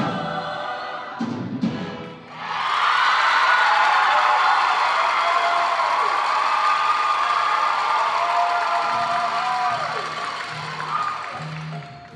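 A mixed show choir singing with its live band. After a brief instrumental passage, the full choir comes in about two seconds in on a loud, long held chord that fades near the end.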